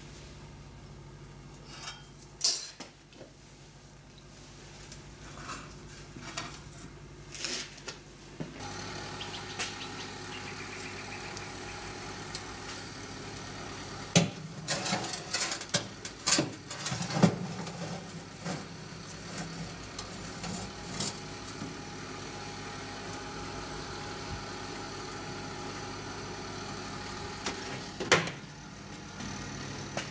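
A steel powder-coating fixture holding a hairpin table leg is handled and loaded into a benchtop electric oven: scattered metal knocks and clatters, loudest in the middle, over a steady hum that starts about a third of the way in. A sharp knock near the end as the oven door is shut.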